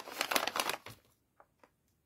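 Thin wrapping paper crinkling and rustling as hands handle a wrapped gift, stopping about a second in, followed by a couple of faint ticks.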